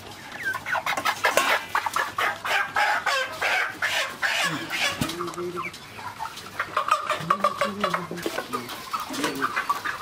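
A flock of six-week-old Ross 308 broiler chickens clucking, with many short calls overlapping throughout.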